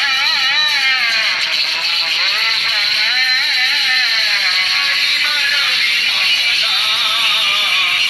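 Devotional singing: one voice carrying a long, wavering, sliding melody over steady musical accompaniment.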